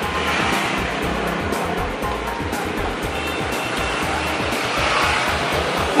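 Steady street-traffic noise, an even rush of passing vehicles, with background music underneath.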